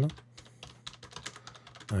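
Typing on a computer keyboard: a run of irregularly spaced keystroke clicks.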